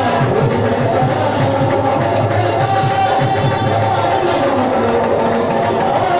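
Qawwali music played loud and continuous, with a quick, steady drum rhythm under sustained melodic lines.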